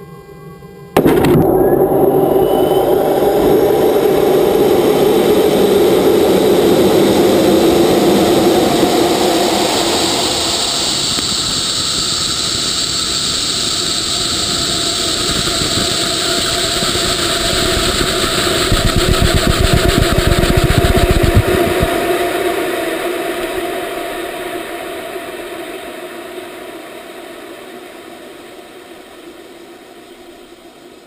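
A rocket motor heard from a camera riding on the rocket. It ignites suddenly about a second in with a loud rushing roar and keeps going through the climb. A deep rumble swells about two-thirds of the way through, and then the sound fades away steadily.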